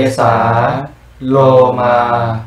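A man's voice slowly chanting the Pali words 'kesā' (head hair) and then 'lomā' (body hair), each drawn out for about a second with a short pause between. These are the first two of the five basic objects of meditation recited at a Buddhist ordination.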